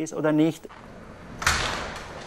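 A glass-panelled door with a metal frame being pulled open by its handle: a sudden clack of the latch about one and a half seconds in, fading off quickly.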